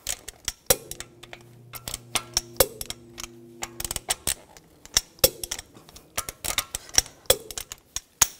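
Click-type torque wrench ratcheting on wheel lug bolts in a quick run of sharp metallic clicks, with a louder click every two seconds or so as each bolt is checked at its 90 ft-lb setting.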